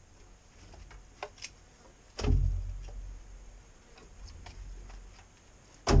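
Pieces of split firewood knocking together as they are handled and set onto a stack: a couple of light knocks about a second in, then a heavy wooden thud about two seconds in and another near the end.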